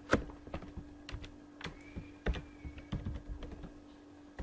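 Typing on a computer keyboard: a scatter of irregular keystrokes.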